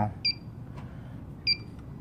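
Two short, high electronic chirps about a second and a quarter apart, part of a chirp that repeats at a steady pace, over a low background hum.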